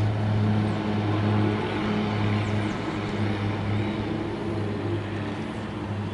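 Twin-engine propeller airplane's engines running at takeoff power during the takeoff roll: a steady, deep drone that slowly gets quieter.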